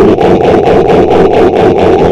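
Loud, steady engine-like rumbling that pulses evenly at about six or seven beats a second.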